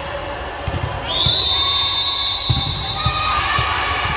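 A referee's whistle sounds one long steady blast starting about a second in and lasting about two seconds, the signal that authorises the serve. A volleyball bounces on the hard court floor with dull thuds before and during it, over players' voices.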